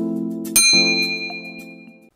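A bell-like chime sound effect rings out about half a second in, over held synth music chords, as the animated cursor clicks the notification-bell button. A short click comes just before the chime, and the chime and music fade away together.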